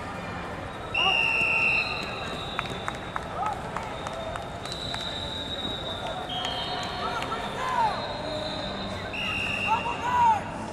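Referee whistles at a multi-mat wrestling tournament: one loud, steady blast lasting just under a second about a second in, another near the end, and fainter whistles at other pitches in between.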